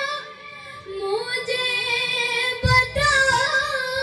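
A boy singing a manqabat, a devotional Urdu praise poem, into a handheld microphone in one melismatic voice. He pauses briefly for breath near the start, and a short low thump sounds just before the end.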